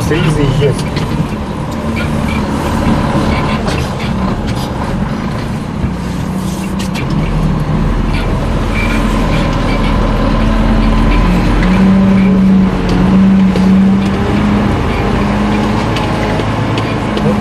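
Garbage truck's diesel engine running, heard from inside the cab as the truck creeps between parked cars; it revs harder for a couple of seconds about three-quarters of the way through, with a few short knocks and rattles.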